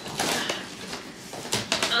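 Cardboard box scraping and rustling as a packed furniture piece is pulled out of it, with a burst of scraping near the start and a quick run of sharp knocks and clicks near the end.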